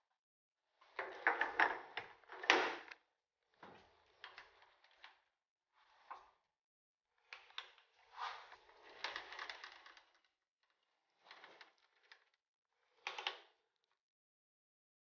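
Scattered short metallic clicks and scrapes from a scribing tool in its holder being fitted to a lathe's quick-change toolpost and set against a steel washer in the chuck. The loudest clatter comes in the first few seconds, then softer clicks come on and off.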